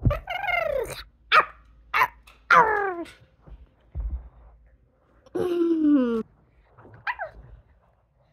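A girl's voice imitating a wolf or dog: a string of short barks and yips that fall in pitch, with one longer, lower held call about halfway through. A dull thump of a landing on the carpet comes about four seconds in.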